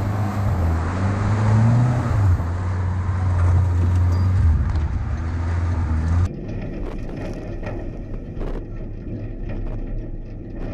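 Engine of a homemade off-road buggy, built on a donor car's engine, running under load as it drives over rough ground, its pitch rising and falling, with heavy noise from wind and terrain. About six seconds in the sound cuts to a quieter engine hum with scattered knocks and rattles from the vehicle.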